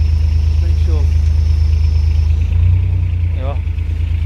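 An engine idling steadily with a low hum, its tone shifting slightly about two and a half seconds in.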